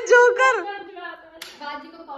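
A woman laughing, high-pitched and loudest in the first half second, with a single sharp hand clap about one and a half seconds in.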